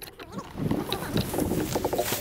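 Irregular rustling and knocking of tree branches against a drone-mounted camera caught in a tree, as the drone is jostled among the branches.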